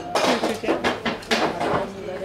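People laughing in a string of short bursts.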